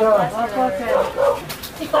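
Speech only: a woman repeating "thank you so much, sir".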